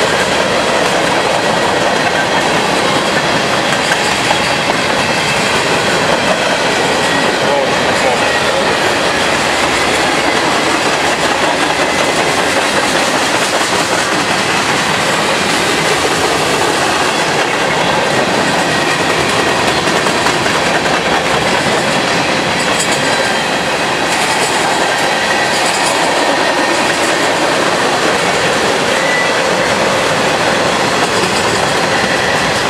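Freight cars of a long train, mostly covered hoppers, rolling steadily past close by: continuous steel-wheel-on-rail noise.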